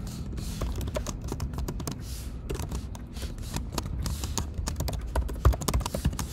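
Typing on a computer keyboard: a series of quick, irregular key clicks.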